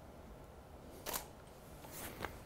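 Canon EOS 5D Mark III DSLR shutter firing once about a second in: a single short, sharp mechanical click as a frame is taken.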